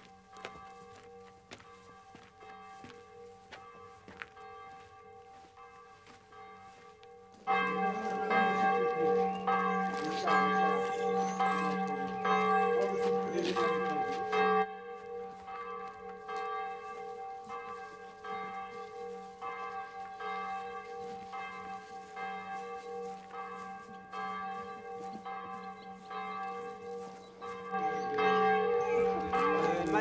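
Church bells ringing a peal of repeated strokes, fainter at first and suddenly much louder about seven and a half seconds in.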